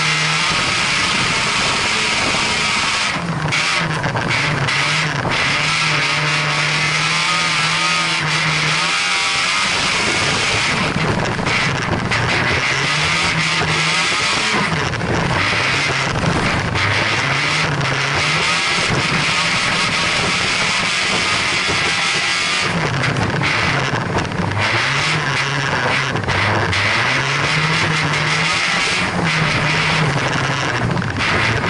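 Folkrace car engine heard from inside the stripped cabin under race load. It holds steady revs for several seconds, then repeatedly climbs and drops as it accelerates and lifts, over a constant hiss of gravel and road noise.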